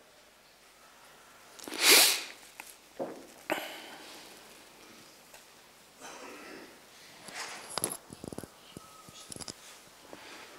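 Paper envelopes being picked up, handled and opened at a table, with soft rustling and a few light taps. About two seconds in comes one loud, short, breathy burst of noise, the loudest sound here.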